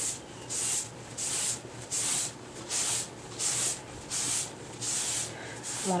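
Rag wiping wood stain onto a mahogany desktop in back-and-forth strokes along the grain, making a steady rhythm of soft swishes, a little under two a second.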